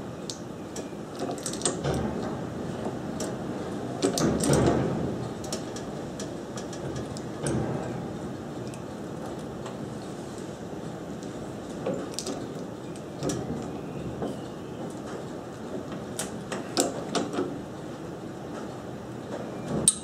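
Click-type torque wrench with a 22 mm socket being worked on a small engine's flywheel nut: scattered clicks and clunks of the ratchet and metal-on-metal handling, with a sharp click near the end as the wrench breaks over at its 60 ft-lb setting.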